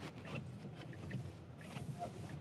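Faint cabin noise of a car moving slowly on a wet road in the rain: a steady low hum with tyre and rain hiss, broken by a few light ticks.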